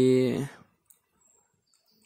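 A man's voice holding out one drawn-out word for about half a second, then near silence with a single faint click about a second in.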